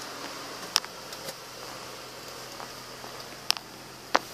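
A car's 3.7-litre V6 idling, heard from inside the cabin as a quiet steady hum, with two light clicks, one about a second in and one near the end.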